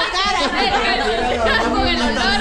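Several people talking over one another in overlapping chatter.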